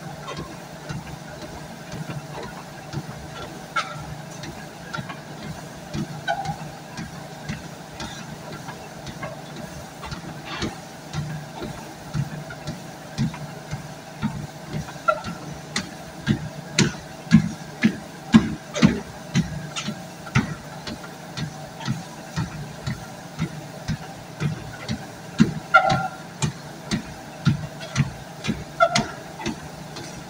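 True treadmill running with a steady motor hum while footsteps thump evenly on the belt at a walking pace, about one and a half steps a second. The footfalls grow louder from about halfway through.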